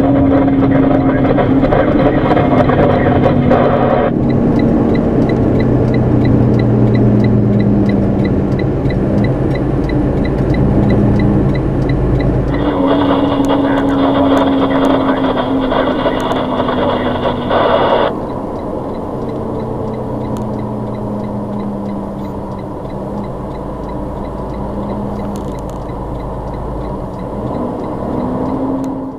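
A semi truck's engine, heard from inside the cab as the truck slows. Its note sinks slowly, jumps back up about halfway through, then sinks again.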